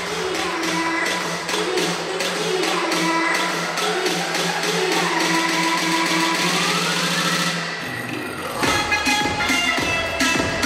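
Upbeat electronic dance music with a steady beat over a held low note; near the end the low note stops and a heavier bass-drum beat comes in.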